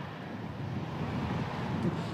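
Steady outdoor background noise: a low rumble of wind and distant traffic.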